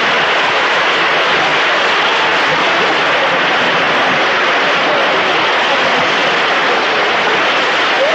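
Concert audience applauding, dense and steady throughout.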